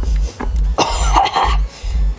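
A person coughing in a short fit of about a second, over background music with a steady thumping beat.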